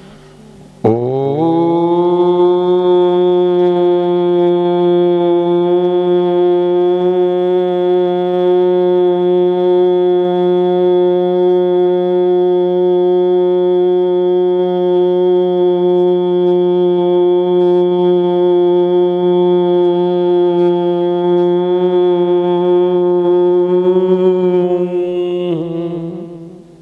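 Conch shell (shankh) blown in one long, steady note of about 25 seconds. It slides up in pitch as it starts, about a second in, and fades away near the end.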